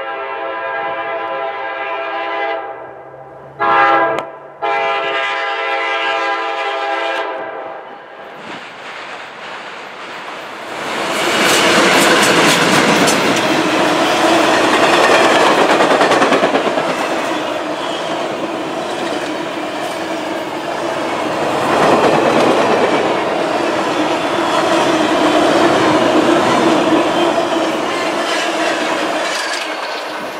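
Norfolk Southern F-unit diesel locomotive's air horn sounding a chord in a long blast, a short one, then another long one. About ten seconds in, the passenger train of heavy office cars passes close by, its wheels clicking steadily over the rail joints. The train noise eases off near the end.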